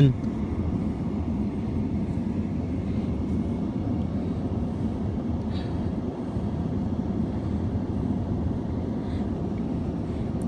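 A steady low rumble of outdoor background noise with no distinct events.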